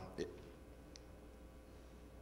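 A man's single short word, then a pause in speech holding only faint room tone with a low steady hum and one faint click about a second in.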